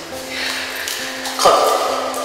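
Instrumental karaoke backing track of a Korean pop ballad playing between sung lines, with held tones and a sudden louder accent about one and a half seconds in.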